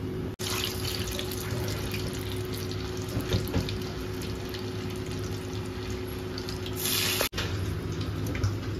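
Hot oil in an iron kadai sizzling and bubbling steadily as batter deep-fries, with fine crackling and a faint steady hum underneath. A brief louder hiss comes near the end before the sound cuts off abruptly.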